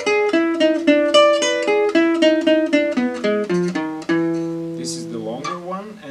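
Selmer-Maccaferri-style gypsy-jazz guitar played with a pick: a quick single-note lick over E7, ending on a long low note held from about four seconds in that rings and fades.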